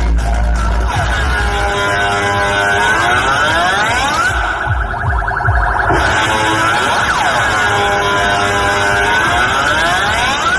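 Dance music played loud through a DJ truck's speaker stack. About a second in the heavy bass drops out, and a siren-like synth sweep rises and falls twice.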